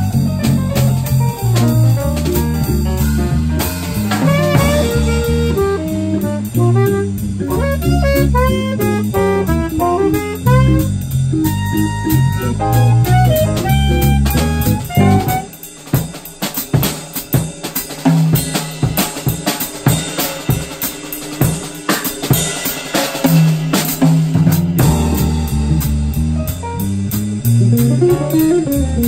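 Small jazz combo of alto saxophone, electric guitar, electric bass, piano and drum kit playing a swing tune with a walking bass line. About halfway through, the band drops out and the drum kit plays alone for about ten seconds, a drum break, before the bass and the rest of the band come back in near the end.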